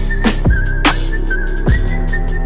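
Electronic background music with a heavy drum beat and a high, wavering, whistle-like lead melody.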